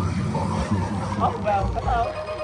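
Several people's voices calling out over background dance music.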